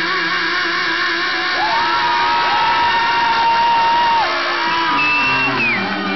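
Live rock band playing, with a lead guitar line of long held notes that bend up, waver and bend back down over the band.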